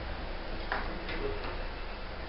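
A few light clicks and taps of objects being handled on a table, over a steady low room hum.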